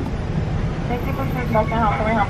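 Car engine running with a steady low rumble, heard from inside the cabin. About a second in, a voice speaks briefly and faintly.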